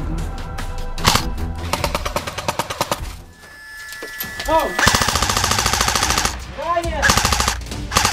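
Airsoft electric guns (AEGs) firing full-auto: several bursts of a rapid, even mechanical rattle, the longest about a second and a half. Background music plays under them.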